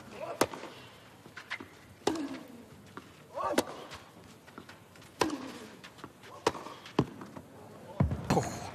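Tennis rally on a clay court: racquets strike the ball about every second and a half, with a player's grunt on some of the hits.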